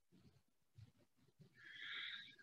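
Near silence: quiet room tone, with a faint breathy hiss lasting under a second near the end.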